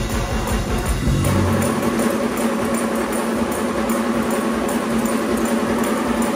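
Live gospel music at the close of a song: the bass and drums drop out about a second in, leaving a long held chord over crowd noise with a steady light beat.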